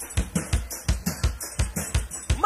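A live band's drum kit playing a steady groove alone: kick-drum thumps with snare and cymbal hits, without melody.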